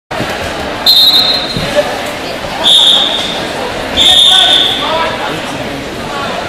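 Wrestling referee's whistle blown three times: a short blast about a second in, then two longer blasts near three and four seconds, over the chatter of a gym crowd.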